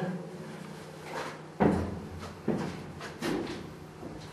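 Three clunks with a ringing echo, about a second apart, the first the loudest, in a hard-walled underground chamber. A steady low hum from a running generator sits underneath.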